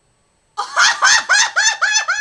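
A woman's loud, high-pitched cackling laugh. It starts about half a second in as a quick run of rising-and-falling bursts, about four a second, and the last one draws out into a held shriek near the end.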